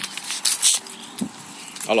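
Footsteps crunching through dry fallen leaves and grass, a few crackly steps, with short voice sounds about a second in and again near the end.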